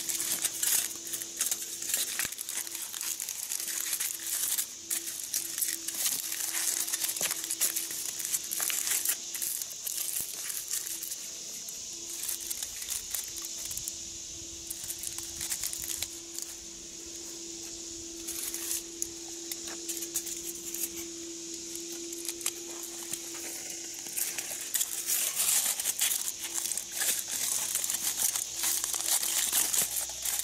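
Aluminium foil crinkling and crumpling as it is wrapped and pressed by hand around a squash plant's stem. It comes in irregular bursts, busiest at the start and again near the end, sparser in the middle.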